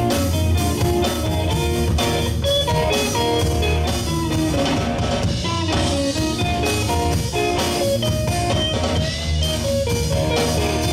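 Live blues-rock band playing an instrumental passage: an electric guitar plays a melody of single notes over electric bass and a drum kit keeping a steady beat.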